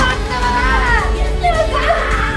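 A woman's high voice crying out and screaming in fright in short, wavering cries, over a steady low drone from the film's score.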